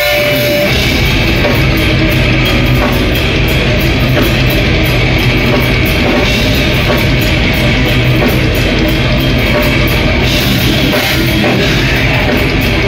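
Live metal band starting a song at full volume: distorted guitar and bass with fast drumming and cymbals, kicking in right at the start after a held note of guitar feedback.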